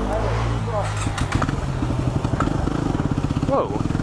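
Motorcycle engine running, with a steady low rumble and a rapid even thump of firing pulses that comes up about a second in and lasts until near the end; short bits of voice over it.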